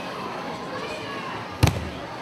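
A judo player thrown onto the mat lands with a single sharp, loud thud near the end.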